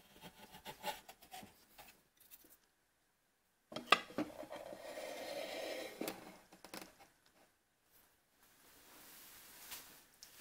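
Faint scattered ticks of a metal hand plane at work on a drawer side. Then, about four seconds in, a click and roughly two seconds of wood rubbing on wood as an oak drawer is slid into its snug opening, followed by a couple of light knocks.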